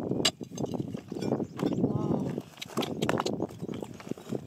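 Digging in rocky ground: a steel digging bar scraping into gravel and loose stones crunching as they are shifted by hand. Several sharp clicks of stone knocking on stone or metal come at about a quarter second in and in a cluster around three seconds.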